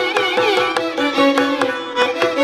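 Carnatic violins playing a melody with sliding, bending ornaments, over a steady run of mridangam strokes.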